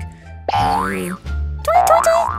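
Background music with a low steady bass, and a comic sound effect about half a second in whose pitch slides up and then back down, lasting under a second.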